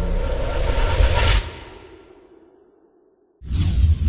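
Intro sound effects: a whoosh swells to a sharp peak a little after a second in, then fades away to near silence. A little before the end a loud new whooshing effect cuts in with deep pulses and repeated sweeps.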